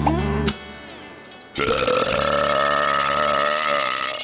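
A music cue ends about half a second in; then a cartoon character lets out one long burp that lasts about two seconds.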